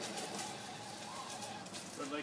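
Faint steady running of a Traxxas Stampede VXL electric RC monster truck driving on asphalt on oversized rubber tyres, with a light motor whine in the first second.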